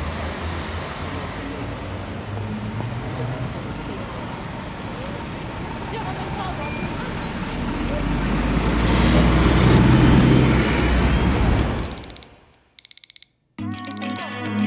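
Street traffic ambience that swells into the low engine rumble of a double-decker bus pulling up, loudest about ten seconds in, with a brief hiss near its peak, then cut off abruptly. A few short electronic tones follow just before the music starts.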